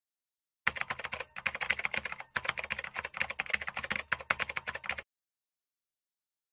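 Rapid typing on a computer keyboard: a dense run of key clicks starting about half a second in, with two brief pauses, that stops abruptly about five seconds in.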